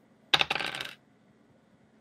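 Dice rolling: a brief rattling clatter of small hard dice tumbling, about a third of a second in.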